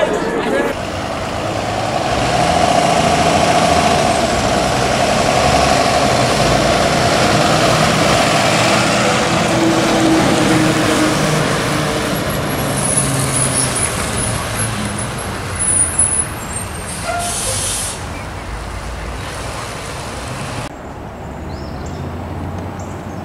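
A diesel school bus running and driving down the street, with a thin, high brake squeal as it slows and a short hiss of air brakes about 17 seconds in. The sound changes abruptly near the end to a quieter scene.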